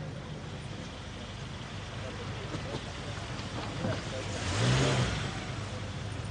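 Car engine running low and steady, with a louder swell of engine and tyre noise about four and a half seconds in that lasts under a second.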